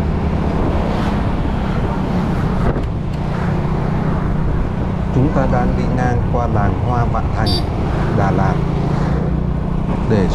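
Ride-along sound of a 2005 Honda Future Neo motorcycle cruising through town: steady engine hum mixed with wind and road noise. A voice joins it in the second half.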